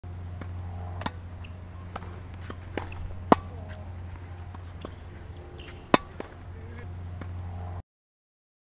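Tennis balls struck by racquets and bouncing on a hard court during a rally: a string of sharp pops, the two loudest about three and a half and six seconds in, over a steady low hum. The sound cuts off just before the end.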